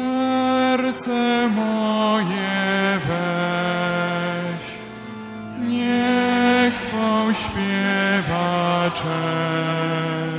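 A church hymn sung with sustained accompaniment, in long held notes that slide at their ends, broken by short pauses.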